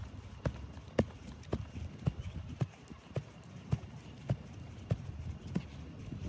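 Footsteps at a steady walking pace, about two soft knocks a second, heard faintly against light outdoor background noise.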